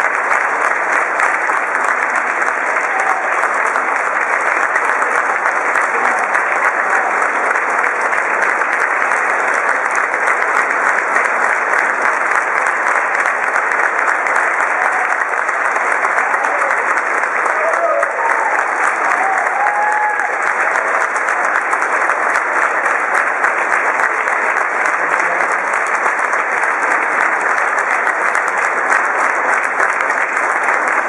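Audience applauding steadily, with a few voices rising out of the crowd about two-thirds of the way through.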